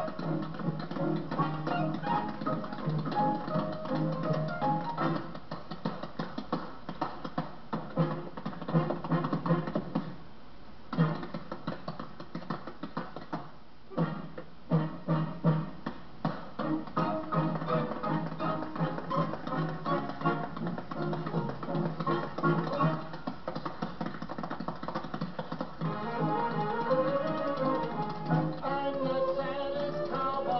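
Rapid tap-dance taps from metal-plated shoes over a western swing band's music, from an old film soundtrack played back through a speaker with dull, cut-off highs.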